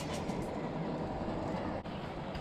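Steady rushing noise of a bicycle being ridden on a concrete path: wind on the microphone and tyres rolling, with a brief drop near the end.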